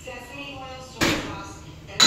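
Chest fly machine in use during a rep, with a sudden loud knock about a second in that fades over about a second.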